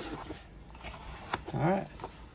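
A white cardboard card box being handled and opened by hand: faint cardboard rustling with one sharp tap about halfway through, and a brief voiced sound near the end.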